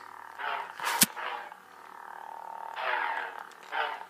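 Hasbro Luke Skywalker electronic toy lightsaber playing its electronic sound effects: a faint steady hum with two sweeping swing sounds. A sharp click about a second in is the loudest moment.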